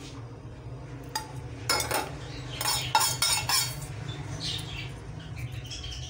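Metal spoon clinking and scraping against cookware, a string of short clinks over a few seconds, with a steady low hum underneath.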